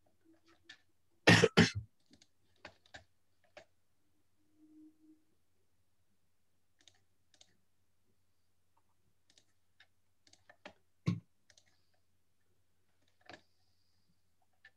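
Scattered clicks and knocks picked up over a video-call microphone, typical of a computer mouse and keyboard while the next screen share is being set up. A loud double thump comes just over a second in and a sharp knock about eleven seconds in, over a faint low hum.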